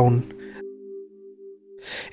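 Background music: a steady held chord of a few low notes that fades out near the end, after the narrator's last word.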